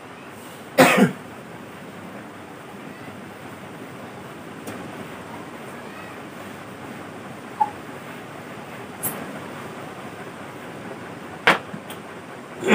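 A single cough about a second in. After it comes a steady faint hiss, with a few soft knocks and taps as a whiteboard is wiped with an eraser and a marker is picked up.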